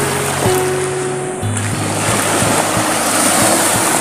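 Background music with sustained low notes, over the steady rush of small waves washing up onto a sandy beach.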